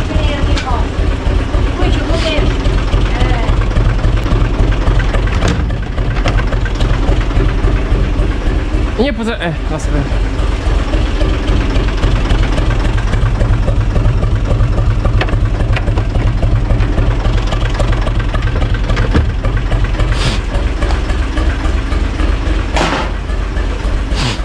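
UTB tractor's diesel engine running steadily, with an even low rumble.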